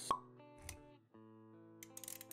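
Intro music with sustained notes, overlaid by motion-graphics sound effects: a sharp pop just after the start, then a soft low thump with a click a little over half a second later, and quick clicks near the end.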